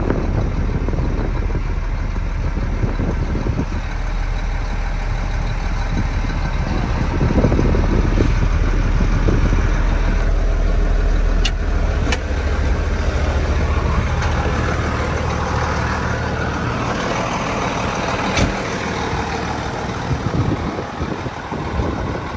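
1994 Case IH 7220 Magnum's six-cylinder turbo diesel running steadily, heard from inside the cab. It gets a little louder for a few seconds about seven seconds in, and a few sharp clicks sound over it around halfway through and again later.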